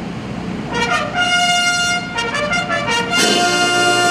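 A bugle call on a brass horn opening the flag ceremony: a few short notes from about a second in, a quick run of short notes, then a long held note near the end.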